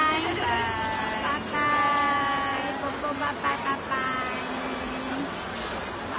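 Gondolier singing, with long held notes, each about a second, separated by short breaks and fading over the last couple of seconds.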